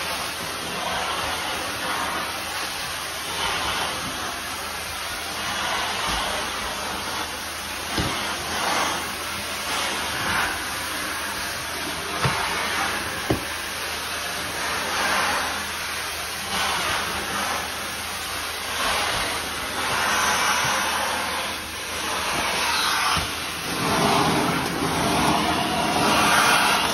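Floor-cleaning extraction wand with a squeegee head pulling rinse water off wet tile under strong vacuum suction: a steady rushing hiss that swells and dips with each pass of the wand, with a few sharp clicks along the way.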